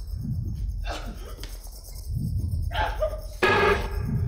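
A woman crying out in short, strained bursts, the loudest near the end, over a low rumbling drone.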